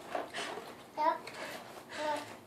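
A toddler making short, soft wordless vocal sounds, a few separate little bursts, while faint rustling comes from the cardboard box of dog biscuits he is digging into.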